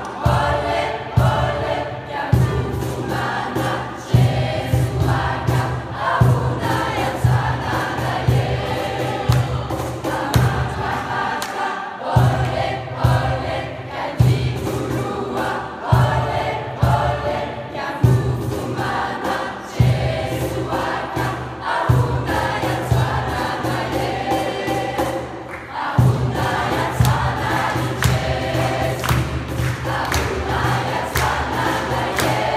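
A youth choir of children and teenagers singing together in a church, over a steady beat of about two strokes a second.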